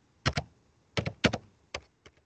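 Computer keyboard being typed on: about seven quick key clicks in small irregular clusters as a search is typed in.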